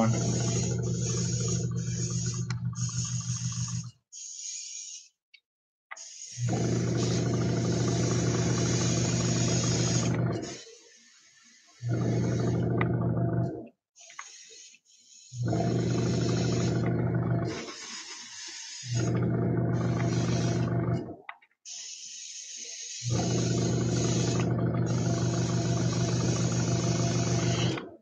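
Airbrush spraying water-based metallic paint, fed by a small compressor: a steady mechanical hum with a hiss of air. It comes in six spells of two to four seconds, broken by short quiet gaps.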